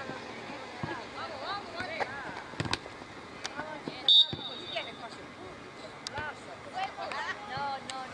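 Players' voices calling across an open football pitch, with a few dull thuds of the ball being kicked. About four seconds in comes a short, loud referee's whistle blast, a single steady high note.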